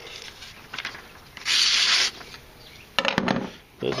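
A sheet of paper rasping once for about half a second, then a few sharp handling knocks.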